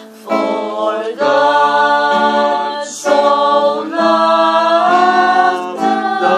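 A man singing a slow song in long held notes that slide between pitches, with acoustic guitar accompaniment, pausing briefly for breath about three seconds in.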